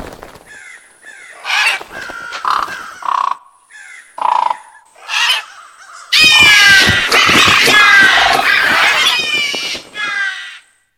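Crows cawing: a few separate caws, then about six seconds in a loud, sudden burst of a whole flock cawing at once that goes on almost to the end.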